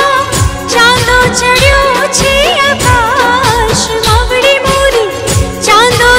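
A woman singing a devotional song, her voice bending and ornamenting the melody, over a musical accompaniment with a steady beat of deep drum strokes.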